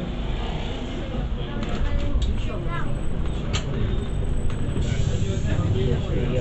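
Steady low rumble of a bus's engine and running gear heard from inside the passenger saloon, with scattered rattles and clicks from the bodywork.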